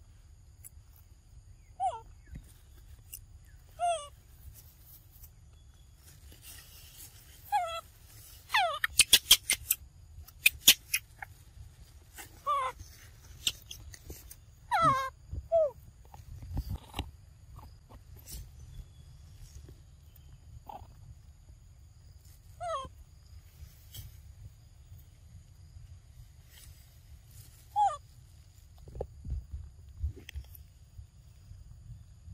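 A young macaque giving short, high squeaky calls that fall in pitch, about a dozen spread through, with a run of sharp clicks about nine to eleven seconds in.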